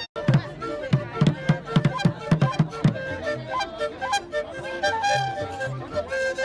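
Traditional dance music: drums struck in a quick run of beats, loudest in the first half, with a melody instrument playing short held notes over them.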